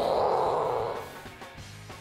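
Alligator gar, just struck by a bowfishing arrow, thrashing at the surface of shallow water: one loud splash that fades after about a second, with music playing under it.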